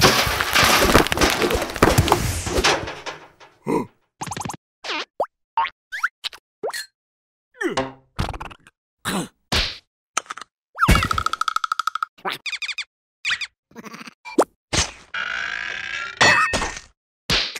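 Cartoon sound effects: a dense clatter for the first two or three seconds, then a string of short separate effects with silences between them, some sliding up or down in pitch and one buzzing tone near the middle.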